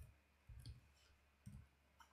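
Faint computer keyboard keystrokes: a few soft, separate key clicks as a short name is typed.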